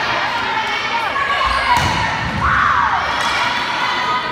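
A volleyball rally on an indoor gym court: the ball is struck with a sharp hit a little under two seconds in. Behind it runs a steady din of crowd and players' voices, with a short loud call about halfway through.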